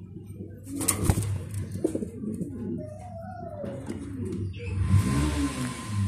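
A Mondain pigeon cooing in low, repeated rolling coos. A sharp knock comes about a second in, and a rustling hiss near the end.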